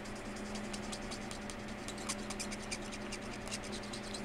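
Felt-tip marker scratching on paper in quick, repeated short strokes, several a second, as a small area is colored in, over a faint steady hum.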